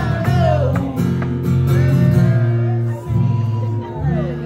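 A man singing live while strumming an acoustic guitar, the chords ringing steadily under the melody. Near the end he holds one long note that then falls away.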